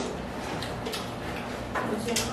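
Quiet eating sounds at a table: scattered light clicks and taps, faint and irregular.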